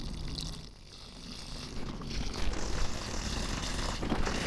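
Water sprinkling from a plastic watering can's rose onto the soil of potted citrus trees, a steady soft splashing hiss that dips briefly about a second in and runs stronger from about two seconds in.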